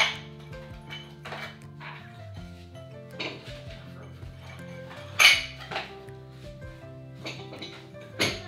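Ceramic tiles clinking and clacking against each other as they are picked up and set down on the concrete floor, in a scattered run of sharp knocks, the loudest right at the start and about five seconds in. Background music with held bass notes plays under it.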